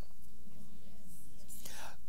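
A pause in a man's speech: a steady low electrical hum under faint hiss, with a breath drawn in near the end.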